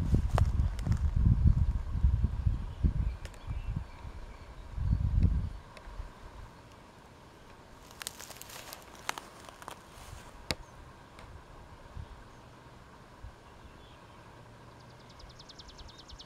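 Wind buffeting the microphone in low rumbling gusts for the first five seconds, then a quieter outdoor stretch with scattered clicks and a brief rustling hiss from handling the camera. Near the end a bird starts a rapid high trill of about eight notes a second.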